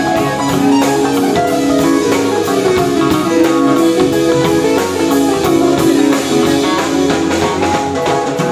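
Live jazz band playing: keyboard chords and electric bass over a drum kit keeping a steady cymbal beat.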